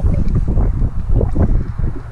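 Wind buffeting the microphone, a loud uneven low rumble.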